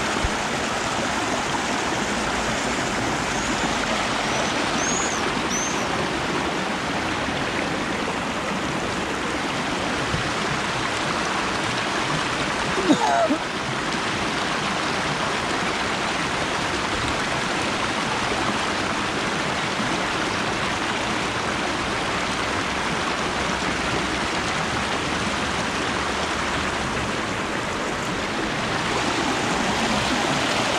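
Shallow river rapids: water rushing and splashing steadily over rocks. A few faint high chirps sound about five seconds in, and one brief louder sound about thirteen seconds in.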